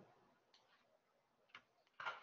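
Near silence with two faint, short computer keyboard clicks, one about half a second in and a slightly louder one about a second and a half in.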